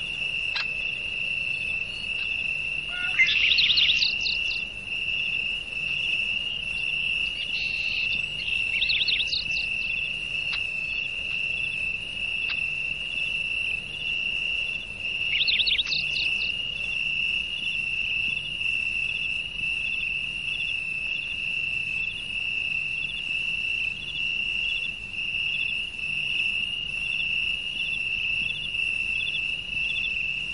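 Insects trilling steadily on one continuous high note with a faint regular pulse. Short, higher chirps break in three times over it.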